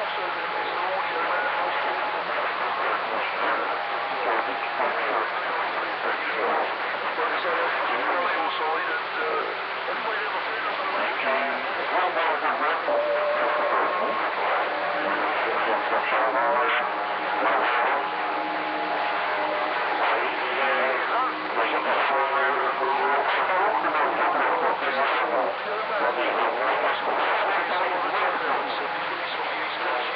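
CB radio receiving a garbled single-sideband voice transmission, very rough reception. The speech is hard to make out under static and other stations on the frequency, and short steady whistling tones keep coming in and out.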